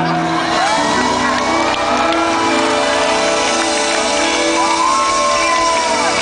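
Live pop song heard from the audience in a large hall: the band plays while a voice holds long notes that rise and fall, with shouts and cheers from the crowd.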